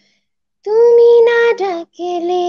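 A woman singing unaccompanied. She comes in about half a second in with a long held note, then slides down to a lower note near the end.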